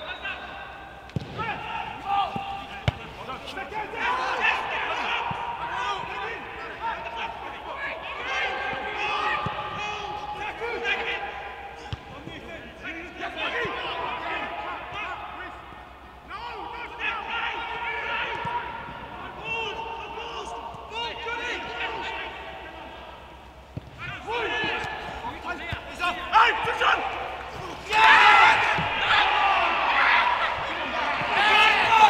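Footballers shouting across an empty stadium, with the thud of a football being kicked now and then. Near the end comes a much louder burst of shouting as a goal is celebrated.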